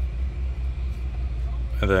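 Low, steady rumble of an idling car engine.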